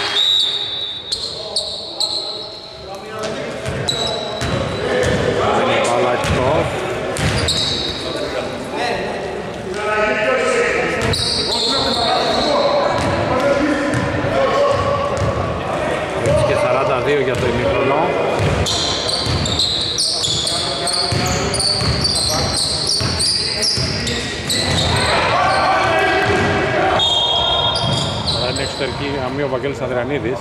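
A basketball being dribbled on a hardwood gym court during play, with voices over it and the hall's echo.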